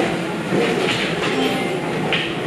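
Gym treadmills and exercise machines running, a steady, even mechanical noise with a few light knocks.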